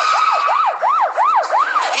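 Police car siren in a fast yelp, its pitch sweeping up and down about three times a second. A steady high tone sounds with it and stops about half a second in.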